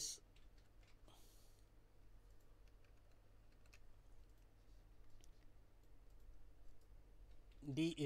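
Faint, scattered clicks and taps of a stylus writing on a pen tablet, over a steady low electrical hum.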